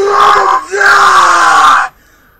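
A person's voice in two loud, drawn-out vocal sounds without words, the second held for about a second and sinking slowly in pitch before it cuts off.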